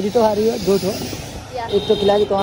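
A person's voice speaking over a steady hiss of background noise.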